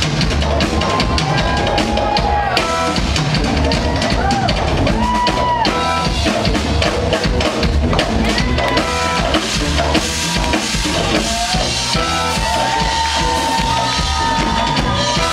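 Live dub reggae band playing: drum kit with a steady beat, kick drum and rimshots, under guitar and keyboards, with a bending melody line.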